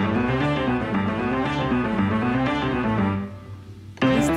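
Background music led by a plucked string instrument, dropping away shortly before the end.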